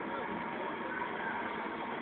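Steady background hum and hiss, with faint voices of people talking.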